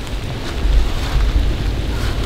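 Wind on the microphone: a steady low rumble, with no shots or clicks.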